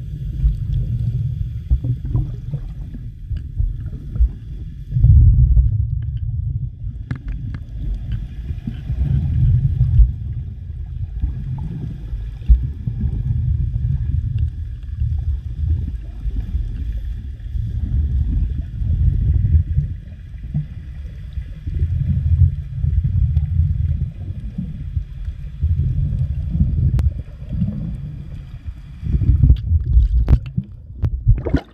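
Muffled underwater sound picked up by a submerged camera: low rumbling water noise that surges every second or two as the swimmer moves, with a faint steady high whine behind it.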